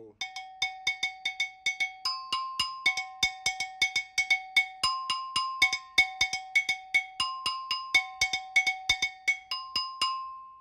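Small modern West African double bell, similar to a Brazilian agogô, struck with a stick in a repeating timeline pattern, about four strokes a second alternating between its lower and higher bell. The last stroke, on the higher bell, rings on at the end.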